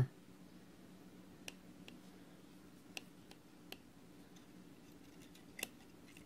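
Metal tweezers clicking against freshly fired kanthal coils on a rebuildable atomizer deck as they are pinched tight, about six faint, separate ticks spread over a few seconds.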